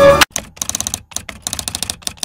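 Typewriter-style typing sound effect: a run of rapid key clicks. It follows the last note of the music, which cuts off about a quarter second in.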